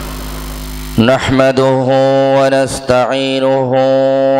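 A steady electrical hum from the sound system, then about a second in a man starts chanting through the microphone in long, drawn-out melodic notes that slide between pitches.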